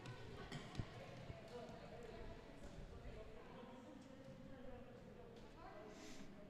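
Faint echoing gym ambience during a timeout: distant voices of players and coaches, with a few thuds of a basketball bouncing on the hardwood floor, the clearest about a second in.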